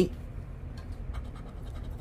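A coin scraping the latex coating off a scratch-off lottery ticket in quiet, irregular short strokes, uncovering one number spot.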